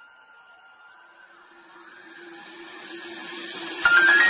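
A ringing chime fading out, then a rising hiss swelling steadily louder over about three seconds, like a transition effect leading into music.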